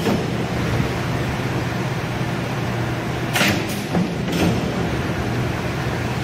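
Cincinnati 12-foot mechanical plate shear idling between cuts, its drive motor and flywheel running with a steady hum. Two brief knocks about a second apart midway.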